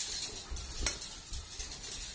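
Close, scratchy rustling and scuffing, with one sharp click a little under a second in and a few soft low thumps.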